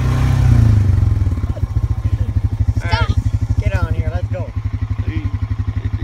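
An engine running at a steady idle, a fast low even pulse throughout, swelling to a louder rumble in the first second. A child's high voice calls out a few times in the middle.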